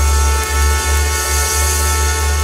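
Instrumental opening of a waltz played by a dance band: sustained chords over a strong, steady bass line, with no singing yet.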